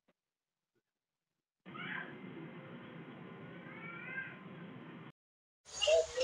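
A cat meowing twice, a short call and then a longer one, heard through the wifi camera's video-call audio. The sound is thin, with a steady hiss underneath, and cuts off suddenly a little after 5 seconds in.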